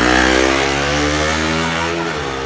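A motor vehicle engine passing close by on the road, a steady hum that is loudest just after the start and eases off a little.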